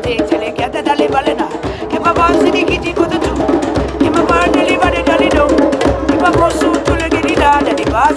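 Hand drums with white synthetic heads beaten in a fast, steady rhythm, with voices chanting over them.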